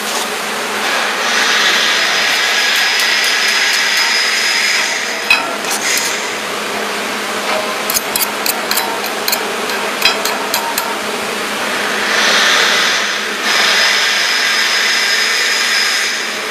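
CNC plasma cutting machine running with a steady hiss and a high whine, louder for a few seconds at a time. A run of sharp metallic taps comes in the middle.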